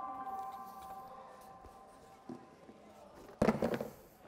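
A chime-like ringing tone, a few pitches sounding together, slowly dying away over the first two or three seconds. A short, louder burst of noise comes near the end.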